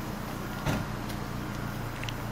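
Audi A3's petrol engine idling steadily, a low even hum, with a single knock about two-thirds of a second in.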